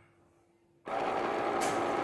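Stainless-steel automatic soap dispenser's pump running for about a second and a half, starting a little under a second in, as it pushes out a dose of foam soap into a hand held under the sensor.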